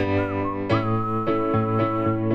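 Upright piano playing waltz chords while a man whistles over it: a short rising note, then one long held note from about three-quarters of a second in.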